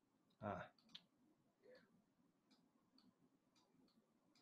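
Near silence with faint, scattered computer mouse clicks as a brush is worked over a photo in Photoshop, and one short vocal sound, a brief grunt or throat noise, about half a second in.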